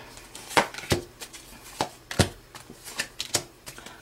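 Tarot cards being handled and laid down on the table: a series of about eight sharp, irregular card snaps.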